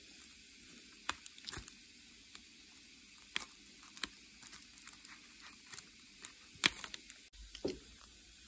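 Pencil tracing over the lines of a paper printout taped onto a painted board: short scratches and taps of the lead on paper, irregular and spread through the whole stretch, over a faint hiss.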